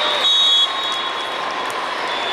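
A referee's whistle blown in one short, steady, high-pitched blast that cuts off under a second in, over the constant din of a crowded sports hall.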